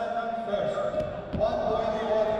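Men shouting in a wrestling arena, long held calls over the bout, with a dull thump about a second and a half in.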